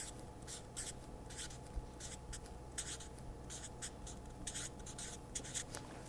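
Marker pen writing a word on paper: a faint run of short, quick strokes.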